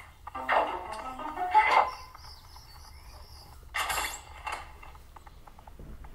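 Cartoon soundtrack: short musical cues in the first two seconds, then sound effects, with a sharp noisy hit about four seconds in and a few small clicks after.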